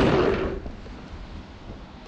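Rustling from a person moving close to the drone's camera microphone as he gets up from the floor and sits on the couch. It fades within about half a second to a low, steady room hiss. The drone's motors are not running.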